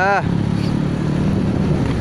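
Motorcycle engine running at a steady cruise while riding, with road and wind noise on the microphone.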